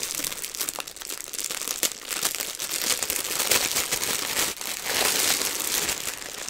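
Clear plastic bag crinkling and crackling as fingers pick at it and pull it open, in quick, uneven rustles.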